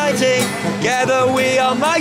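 A man singing with a strummed twelve-string acoustic guitar, his voice holding long notes between lines of the song.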